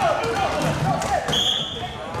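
Referee's whistle blown once as a short, steady blast about a second and a half in. Players are shouting and there are thuds on the court floor before it.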